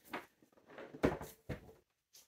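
Cardboard jigsaw puzzle boxes being handled and set down: a short rustle, then two dull knocks about a second in, half a second apart.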